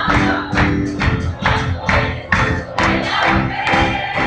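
Lively worship music from a church band, with a steady beat of about two strikes a second under held notes and some singing.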